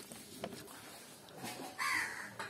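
A bird calls loudly near the end, over faint soft clicks and squelches of fingers mixing rice and curry on a plate.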